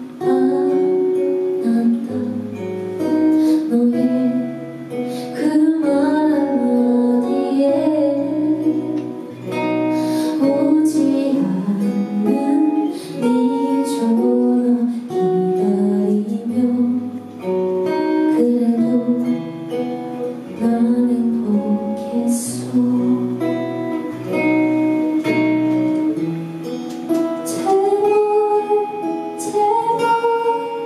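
A woman singing a slow song live into a microphone, accompanied by acoustic guitar, her melody gliding and sustaining over held guitar notes.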